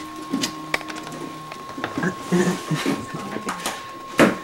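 Indistinct low voices and scattered light clicks and knocks from handling at an open refrigerator, over a steady high tone.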